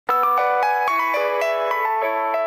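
Mobile phone ringtone playing a chiming, bell-like melody, about three to four notes a second.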